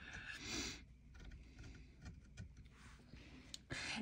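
Faint snips of small scissors cutting a stiff canvas or upholstery fabric, a few soft irregular clicks of the blades.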